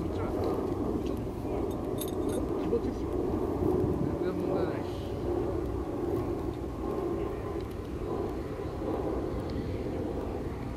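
Paramotor's engine and propeller droning steadily in flight.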